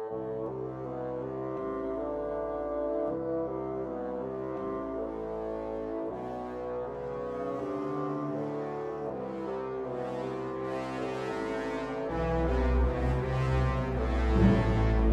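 Slow music for a low-register ensemble of low brass, bassoons and low strings, with sustained chords shifting every second or two over a deep bass. Near the end the bass swells and grows louder.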